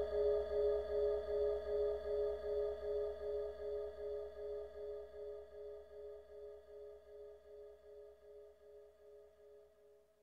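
Dark ambient drone made from an electronically processed gong: a cluster of steady, sustained tones pulsing about twice a second, fading away slowly toward the end.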